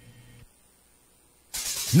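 A faint low hum fades into near silence, then a hissing whoosh cuts in suddenly about one and a half seconds in: the sound effect of a broadcast intro transition. A voice starts just at the end.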